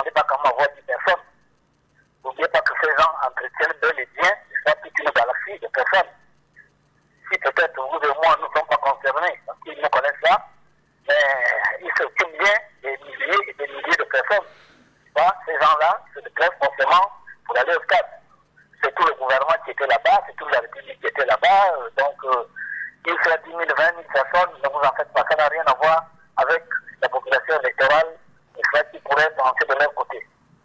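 A caller's voice over a telephone line, thin and narrow-sounding, speaking in phrases separated by short pauses.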